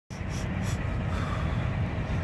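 Steady low outdoor rumble with a faint hiss over it, the kind of background of passing traffic and air moving past the microphone.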